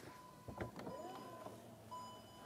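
Jeep Cherokee power tailgate warning chime beeping as the tailgate begins to open: repeated high electronic beeps, each about half a second long, with a soft thump about half a second in as the latch releases.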